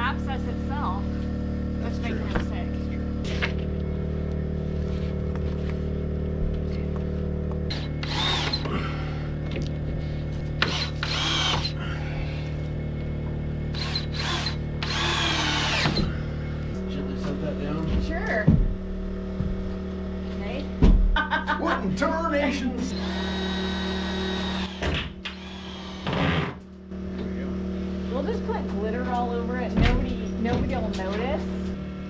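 Background music with a cordless drill driving screws into siding panels in short runs over it. The longest run is a steady whine about 23 seconds in, and a few sharp knocks come a little before it.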